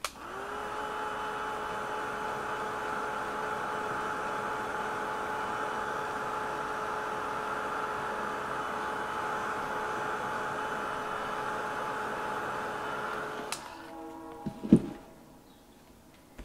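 Handheld craft heat tool running steadily with a fan whir and a constant hum, drying wet paint on a card. It switches off about three-quarters of the way in and is followed by a few clicks and a sharp knock as it is put down.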